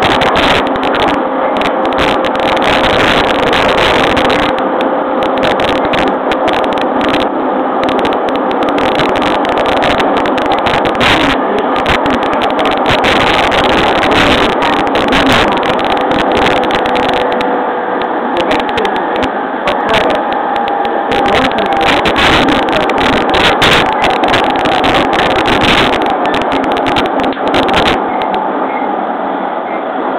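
Running noise inside a JR East E231-series electric train car at speed. Wheels rumble and clatter on the rails, under a steady whine from the traction motors beneath the car.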